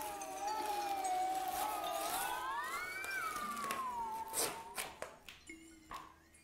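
Electronic soundscape generated algorithmically in Max in response to the painting's colour and movement: a sustained synthesized tone sags, then rises and falls again in pitch, with a few clicks about four seconds in. It gives way to a quieter, steady low tone near the end.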